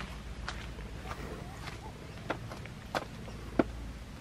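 Footsteps on grass: six light, evenly spaced taps about two thirds of a second apart, over a low steady rumble.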